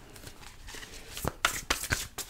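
A deck of tarot cards being handled and shuffled. There is soft rustling, then about four sharp card snaps in the second half.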